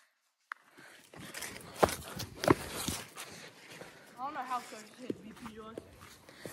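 Faint outdoor movement on a grassy lawn, with two sharp knocks a little under a second apart and a short call from a person's voice about four seconds in.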